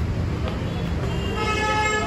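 A horn sounds one steady, held note starting about a second in, over a low rumble.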